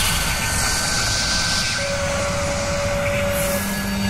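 Synthetic sound effects for an animated logo intro: a steady noisy whoosh that swells in the highs over the first two seconds. A held mid tone comes in just before the middle and stops shortly before the end, and a low steady hum joins near the end.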